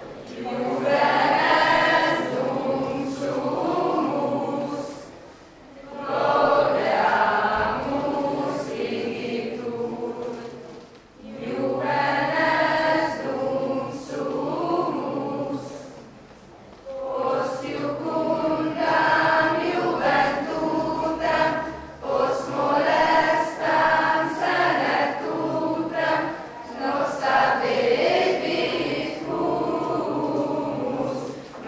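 A choir singing in phrases, with short breaks between them.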